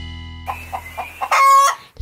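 A sustained guitar chord from the intro jingle dies away, then a few short clucks and one brief, loud squawk come about one and a half seconds in.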